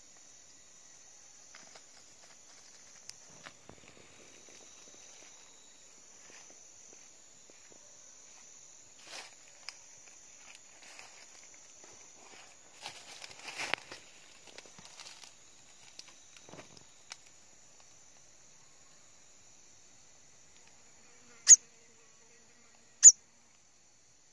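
A steady high insect drone under rustling and crunching of dry bamboo leaf litter underfoot, heaviest around the middle. Near the end, two short, sharp high sounds a second and a half apart stand out as the loudest.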